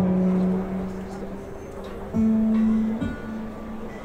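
A few electric guitar notes picked and left ringing. A held note fades over the first second, a new, slightly higher note is picked about two seconds in, and a short strum follows about a second later.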